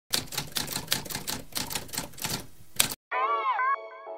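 Rapid irregular clicking like typewriter keys, about six clicks a second for nearly three seconds. Then a held musical tone that bends down in pitch and settles.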